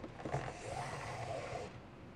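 550 nylon paracord being pulled through a woven paracord bracelet: a soft rubbing swish of cord sliding against cord that lasts about a second and a half.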